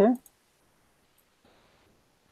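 The end of a spoken "okay", then quiet room tone with a few faint, short clicks of a computer mouse while a screen share is being set up.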